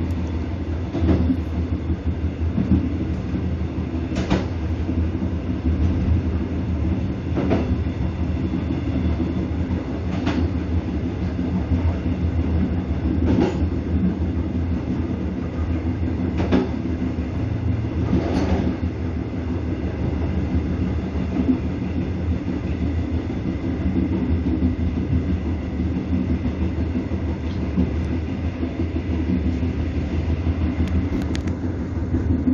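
Passenger train running along the track, heard from its rear end: a steady low rumble with a sharp wheel click over a rail joint every two to three seconds.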